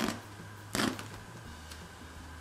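Scissors snipping through the ruffled, sequined fabric hem of a dress, two crisp cuts a little under a second apart.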